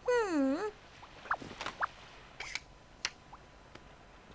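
A cartoon character's short wordless vocal sound, a voiced "hmm" that dips and then rises in pitch, followed by a few faint short blips and light clicks.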